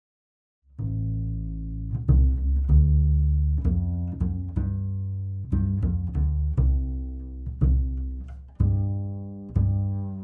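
A double bass playing a line of low notes, starting about a second in, each note with a sharp attack and a decaying tail. It is heard through an Oktava 319 condenser microphone with no EQ, only level matching.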